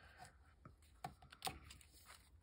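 Faint handling noises of paper and card: a few light taps and rustles as fingers press a paper tab onto a playing card, the clearest two about a second and a second and a half in.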